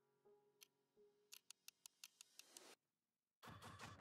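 Very faint background music with a quick run of light ticks in the middle, a brief dead silence, then a louder music track starting just before the end.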